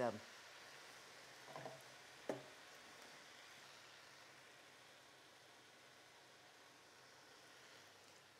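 Faint, fading sizzle of spinach and chard wilting in olive oil in a wok, the greens cooking down to drive off their liquid, with a light click a little over two seconds in.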